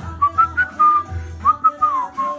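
Devotional music playing from a television, led by a high, thin melody line that rises and falls in short phrases over a steady low bass.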